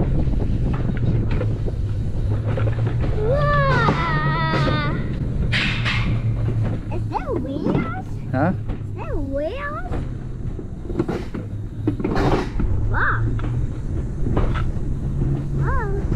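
Scattered wordless voice exclamations and laughter with sliding pitch, one long wavering cry about four seconds in, over a steady low rumble.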